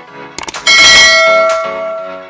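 Subscribe-button sound effect: a couple of quick mouse clicks, then a notification bell dings once, loudly, and rings out, over background music.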